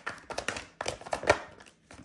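Tarot cards being shuffled and handled: a quick, irregular run of sharp clicks and taps, the loudest a little past halfway.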